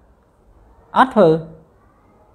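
A pause with quiet room tone, broken about a second in by a short two-part utterance in a man's voice, falling in pitch.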